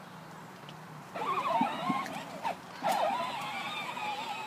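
Electric motor and gearbox of a 12-volt John Deere Gator ride-on toy whining as it pulls away about a second in, the pitch wavering as it moves, with a few light knocks.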